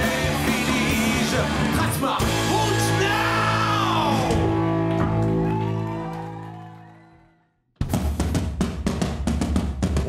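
Live rock band playing electric guitars, bass and drum kit, with a singing voice. The music fades away to silence about seven and a half seconds in, then cuts back in abruptly with drums and guitar.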